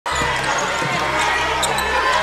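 A basketball being dribbled on a hardwood court, a few bounces spaced well apart, over the steady murmur of an arena.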